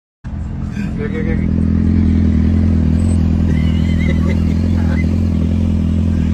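Steady low drone of vehicle engines and road noise heard from inside a moving car, with a motorcycle close alongside. A short laugh comes about a second in.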